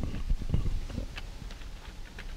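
Laptop keyboard keys clicking as a username is typed, with a few low knocks in the first second.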